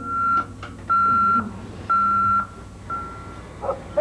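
Electronic alarm clock beeping: four steady high beeps about a second apart, the last one fainter.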